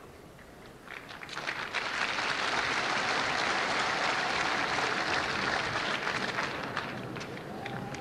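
Audience applauding: the clapping starts about a second in, builds quickly, holds steady, and tapers off near the end.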